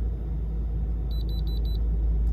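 Handheld OBD2 code reader beeping four quick times as it finishes re-reading the engine computer and finds no trouble codes, over a steady low rumble.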